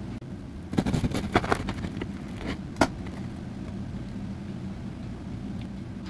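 Crisp sourdough crust crackling and snapping as the loaf is split open by hand, a run of irregular crackles over about two seconds ending in one sharp snap. A steady low hum follows.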